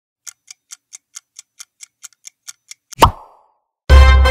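Quiz countdown-timer sound effect: a clock ticking quickly, about four to five ticks a second for roughly three seconds, then ending on a single loud pop as the answer is revealed. Music starts right at the end.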